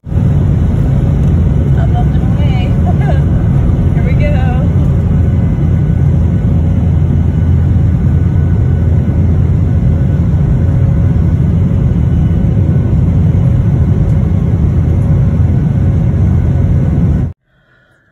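Airliner cabin noise at a window seat beside the jet engine: a loud, steady low-pitched noise from the engines during the climb after takeoff, with faint voices in the first few seconds. It cuts off abruptly near the end.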